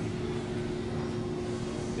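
Steady indoor background hum: a low rumble and a hiss carrying two faint steady tones, with no distinct events.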